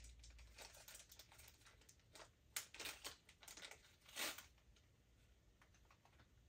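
Faint rustling and crinkling of jewelry packaging handled and unwrapped by hand, in short scattered rustles, with two louder crackles about two and a half and four seconds in.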